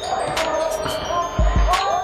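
A basketball bounced on an indoor gym floor, with two quick low thumps about one and a half seconds in.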